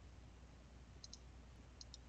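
Faint computer mouse clicks over near silence: two quick pairs, one about a second in and another near the end.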